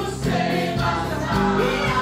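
Gospel music: voices singing together in sustained notes over steady instrumental backing, getting louder about a quarter of a second in.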